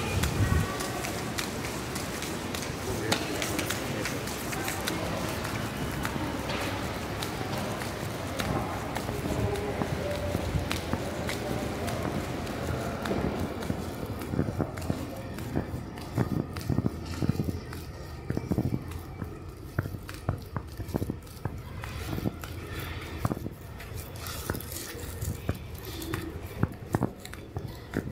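Busy indoor ambience of a large bus-terminal hall: a steady hum with indistinct distant voices, thinning out about halfway through. In the second half there are short sharp taps, footsteps on the hard stone floor.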